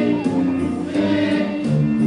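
A young children's school choir singing together, holding steady notes that move from pitch to pitch.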